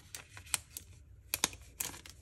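Soft, scattered clicks and crackles of a small plastic-wrapped packet of cards being turned over and flexed in the hands.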